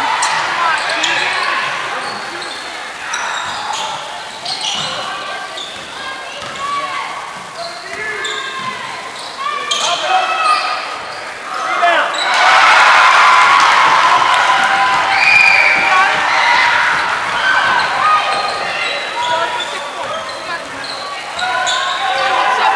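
Sounds of a basketball game on a gym's hardwood court: the ball bouncing, shoes squeaking and players' and spectators' voices echoing in the hall. About twelve seconds in, the crowd noise gets louder and stays up for several seconds.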